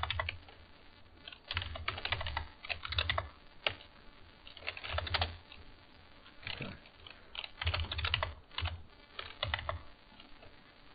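Computer keyboard typing in short bursts of keystrokes, with pauses between them.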